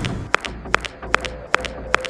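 Cartoon footstep sound effects: short, sharp ticks about every half second, some in quick pairs, over quiet background music.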